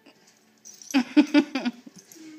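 A large dog vocalising during play with a cat: a quick run of about five short, sharp barking sounds about a second in.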